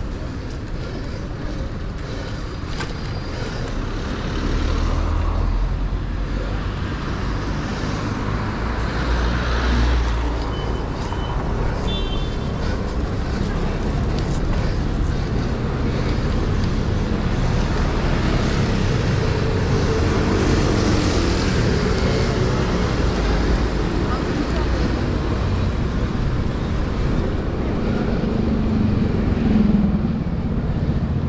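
Traffic on a city street heard from a moving bicycle: cars running past over a continuous low rumble, which grows heavier about four seconds in.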